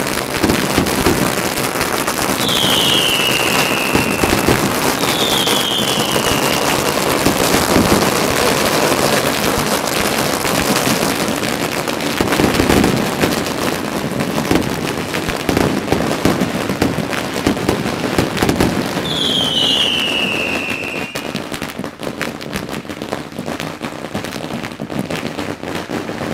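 Strings of Chinese firecrackers going off in a dense, continuous crackle, which thins out after about twenty seconds. A few high whistles, each falling in pitch over a second or so, sound above the crackle.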